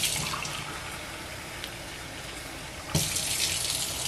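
Kitchen faucet running a steady stream of water into a drinking glass held over a stainless steel sink, the glass filling. The water gets louder and brighter about three seconds in.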